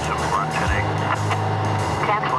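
Music underscore of low, sustained tones, mixed with the sound of a vehicle and brief snatches of indistinct voices.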